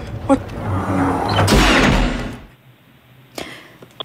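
Film sound effects over score: a shrunken hero diving into a 5 mm tube and hitting a grid that does not give way. It is a dense rush of noise with a sharp click near the start and a swelling whoosh about a second and a half in, and it cuts off abruptly about two and a half seconds in.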